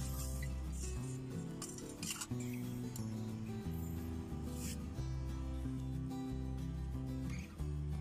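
Background music with held low notes that change every second or so.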